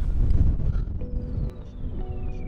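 Wind buffeting the microphone for about the first second, then background music comes in with held tones and a long, slowly falling whistle-like glide.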